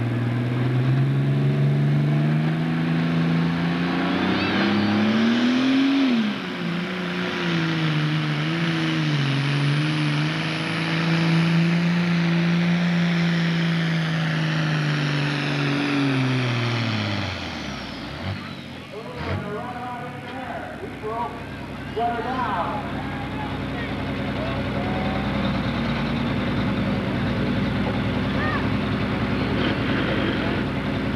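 Pro Stock pulling tractor's turbocharged diesel engine at full throttle, dragging a weight-transfer sled: its pitch climbs for about six seconds, dips and holds as the sled bogs it down, then falls away over a couple of seconds as the tractor slows to a stop a little past halfway. A low engine rumble follows.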